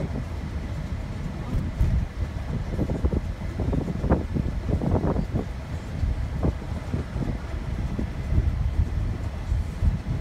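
Low, steady road and engine rumble heard inside a moving car's cabin, with a few brief louder moments along the way.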